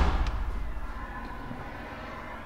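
A plastic window's handle and sash are knocked and swung open with a sharp clack at the start. Then a steady low rumble of outdoor air comes in through the open window.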